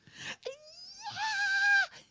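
A woman's high-pitched mock squeal of fright, sliding up and then held steady for about a second before it stops.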